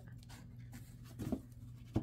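Soft rustle and light taps of a stiff-cardstock tarot deck being squared and split in the hands, with a faint steady low hum underneath.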